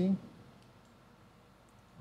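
A jointed 3D-printed plastic figure being handled, giving a few faint, light clicks in an otherwise quiet stretch, after a single spoken word at the start.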